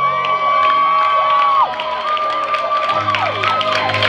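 Two female voices holding the last high note of a show-tune duet over the accompaniment, then the audience breaking into cheers, whoops and clapping as the song ends.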